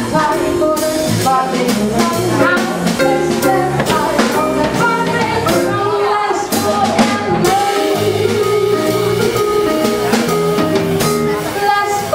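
Live jazz band playing: a woman singing into a microphone over drum kit and electric bass, with cymbals struck throughout.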